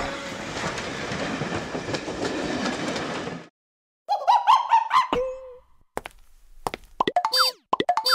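Cartoon sound effects: after a steady rumbling noise that cuts off suddenly about three and a half seconds in, springy boing-like sounds with wobbling, bending pitches, then near the end a quick run of sharply falling pitch glides as a cartoon character slips on a banana peel.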